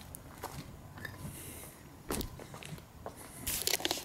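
Footsteps scuffing on a wet asphalt driveway, with scattered clicks and scrapes and a quick cluster of sharper clicks near the end.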